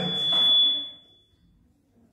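The end of a spoken word over a thin, high, steady tone like a beep or whine, which fades out about a second and a half in, followed by near silence.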